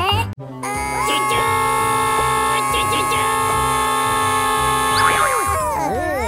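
A long held sound of several steady tones together, like a chord or a whistle, lasting about five seconds and sliding down in pitch near the end. Cartoon voice sounds start just as it fades.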